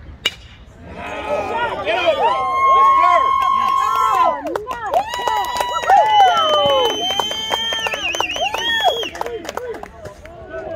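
A bat hitting a baseball with a single sharp crack, then spectators cheering and yelling, with long high held shouts and scattered clapping.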